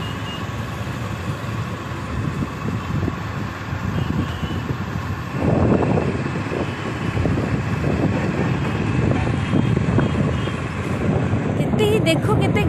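Wind rushing over the microphone and road noise from a moving two-wheeler. The rumble grows louder about five and a half seconds in, and faint steady tones hum underneath.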